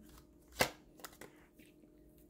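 Tarot cards handled by hand: one sharp card snap about half a second in, then a few faint ticks of cards against each other.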